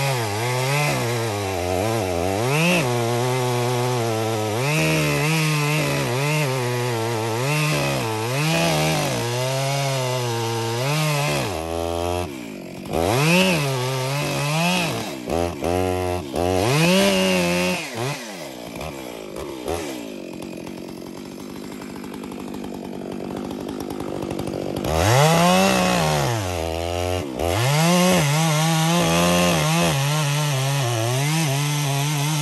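Stihl Magnum chainsaw cutting into a large tree trunk, the engine speed rising and falling over and over as the bar works through the wood. About 18 seconds in it drops back to a lower, quieter idle for several seconds, then revs up and cuts again near the end.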